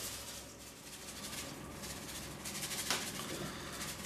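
Dry wine yeast sprinkled from a sachet onto grape must in a plastic fermenter bucket: a faint, steady hiss of falling granules, with one small click about three seconds in.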